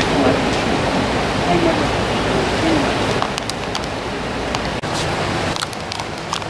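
Steady rushing of a creek's running water, with faint voices underneath. The rush drops off abruptly near the end, leaving a few light clicks.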